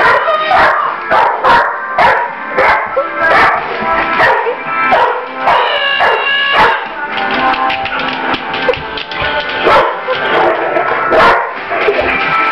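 A dog barking repeatedly, with music playing underneath.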